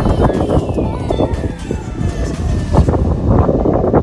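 Wind buffeting a phone microphone in gusty, rumbling bursts, with a faint long tone falling steadily in pitch behind it.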